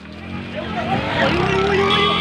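A motorcycle engine running and growing louder as it approaches, under a crowd of men shouting.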